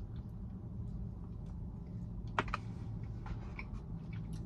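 A person chewing a bite of chilled cookies and cream cookie with mint frosting: scattered small crunchy clicks, one sharper click about two and a half seconds in, over a steady low hum.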